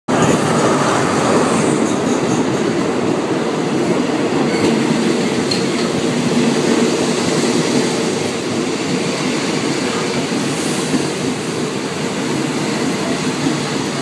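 A passenger train's carriages rolling past alongside a station platform, with the loud, steady noise of wheels running on the rails, easing slightly in the second half.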